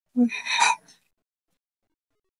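A person's brief, gasp-like vocal sound, under a second long: a short voiced start that turns breathy.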